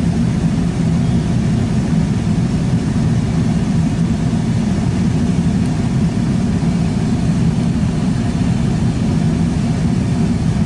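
A vehicle engine idling steadily, heard from inside the cab as a low, even hum.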